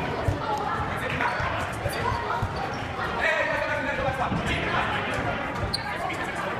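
Echoing sports-hall activity: repeated dull thuds on the wooden gym floor mixed with indistinct chatter from young players, strongest around the middle.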